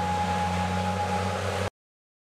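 Stryker armoured vehicle's diesel engine running steadily, a low hum with a thin high whine over it, cutting off suddenly near the end.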